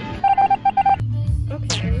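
A rapid series of about eight short electronic beeps on one steady pitch, lasting under a second, followed by background music with a low, steady bass.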